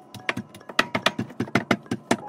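Wooden rolling pin clacking against a countertop as dough is rolled back and forth: a fast, uneven run of sharp clicks, about eight a second.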